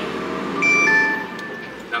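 An electronic chime of several clear, sustained tones, each entering lower than the one before, about half a second in, and starting again near the end, over the steady running noise inside a truck cab.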